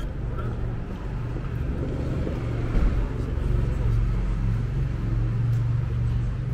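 City street traffic: a car's low engine rumble that grows louder a couple of seconds in, with indistinct voices of passers-by.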